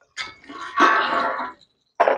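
An animal's call, one drawn-out call lasting about a second and a half.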